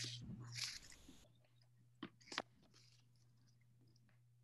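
Sheets of craft paper being handled and folded, rustling for about the first second, then two short sharp clicks close together about two seconds in, over a faint steady low hum.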